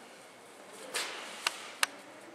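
A handful of Host dry cleaning sponge compound dropped onto a tile floor: a soft rustle about a second in, then two sharp clicks on the tile.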